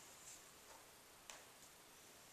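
Near silence: faint room tone, with one brief faint click a little past halfway.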